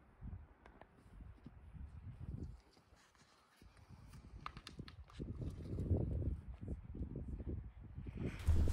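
Horses on dry packed dirt: a horse rolling and shuffling in the dust, then hooves thudding and scuffing as the horses walk and move about, with a few sharp clicks about four and a half seconds in. The sound drops out briefly about three seconds in.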